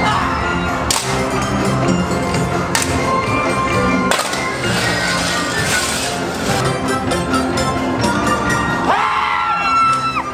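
Halloween parade music playing loudly over loudspeakers. Three sharp cracks sound about one, three and four seconds in, and a hiss follows the last of them.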